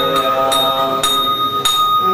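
A Buddhist bowl bell ringing with a long, clear sustained tone, joined by sharp strikes about twice a second, over a monk's chanting.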